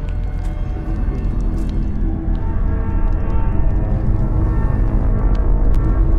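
Suspenseful film score music: held notes over a deep low drone, slowly growing louder.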